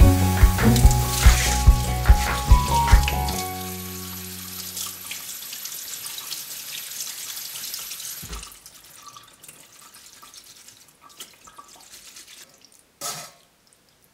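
Background music with a beat for the first few seconds, then a kitchen tap running into a steel pot in the sink as cooked tapioca pearls are rinsed in cold water. About eight seconds in the running water gives way to a thump, followed by faint handling sounds and a short burst of noise near the end.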